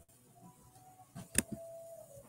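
Faint background music, a slow melody of held notes, with a single sharp click about one and a half seconds in.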